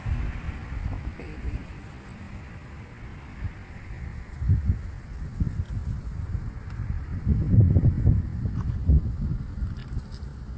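Uneven low rumbling of wind and handling noise on the phone's microphone, swelling in gusts and strongest about seven to nine seconds in.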